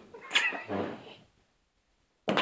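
A brief high-pitched squealing call lasting under a second, followed by a lower, quieter sound.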